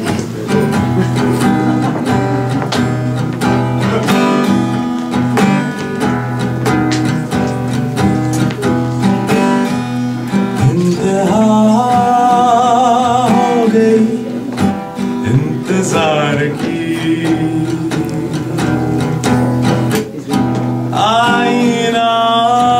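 Steadily strummed acoustic guitar playing a Hindi film song. A man sings into a microphone over it from about eleven seconds in, and again near the end.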